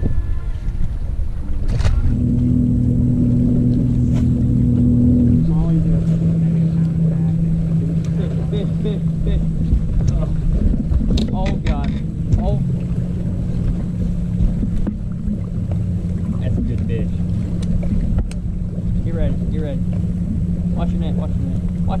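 Bass boat's electric trolling motor humming steadily, its pitch stepping to a new level a few times as the speed changes, with low wind rumble on the microphone.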